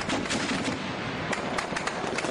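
Rapid small-arms gunfire: many shots fired in quick, irregular succession.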